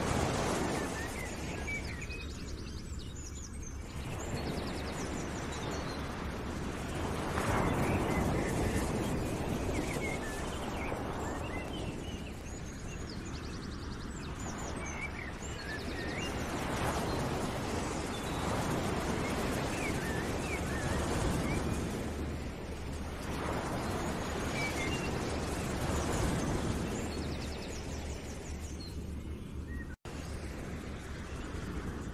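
Outdoor nature ambience: a rushing noise that swells and falls every three to five seconds, with scattered short bird chirps over it.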